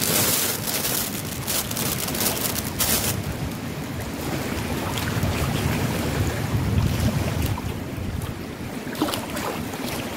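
Wind buffeting the microphone over the wash of river water against rocks, with a low rumble swelling in the middle. In the first three seconds a plastic bag crinkles as food is unwrapped from it.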